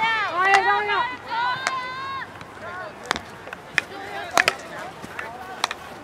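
Voices calling out over the first two seconds, then a handful of sharp clacks of field hockey sticks striking the ball and each other during play.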